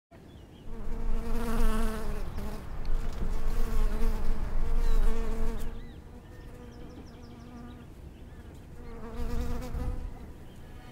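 A bee buzzing in flight: a wavering hum that starts under a second in, stays loud for about five seconds, drops away, then swells again near the end.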